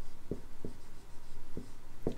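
Dry-erase marker writing on a whiteboard: a few short, separate strokes as letters are drawn.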